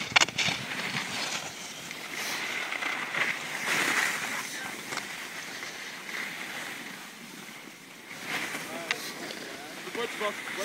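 Skis sliding and scraping over packed snow, with wind rushing over the microphone; the rushing is strongest in the first half and dies down as the skiers slow.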